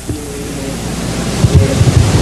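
A faint, distant voice of an audience member asking a question off-microphone, under a steady hiss and low rumble on the talk's recording, with low bumps growing busier in the second half.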